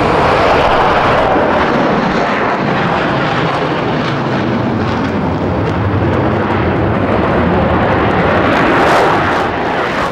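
Concorde's four Rolls-Royce/Snecma Olympus 593 turbojet engines at takeoff power as the aircraft climbs away: loud, steady jet noise that grows a little stronger near the end.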